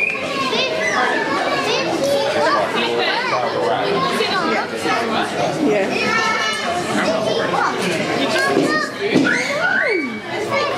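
Many children's voices at once: excited chatter and calling out, with high voices gliding up and down, continuing throughout.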